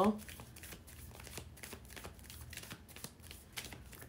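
A deck of tarot cards shuffled by hand: a quick, irregular run of soft flicks and clicks as the cards slide over one another.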